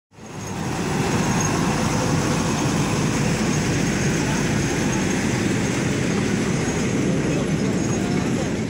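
Zoo toy train running past with its open passenger carriages: a steady noise of the train and its wheels on the rails.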